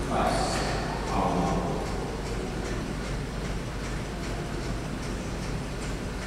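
A few faint spoken words in the first second or so, then a steady low hum of room tone.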